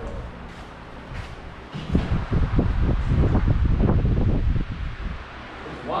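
Air buffeting the camera microphone: a loud, irregular low rumble that rises about two seconds in, lasts about three seconds and then fades.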